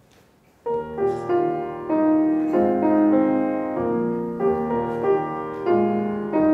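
Grand piano begins playing about a second in, the introduction to a song: a run of separate notes and chords.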